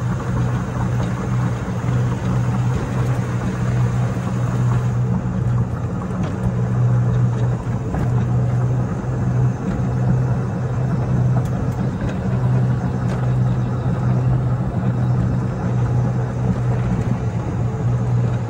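EZGO TXT 48-volt electric golf cart driving at a steady speed: a constant low hum from the electric drive, with road and wind noise over it.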